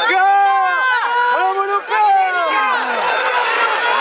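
Several men shouting and yelling over one another in long, drawn-out cries, urging on racing greyhounds.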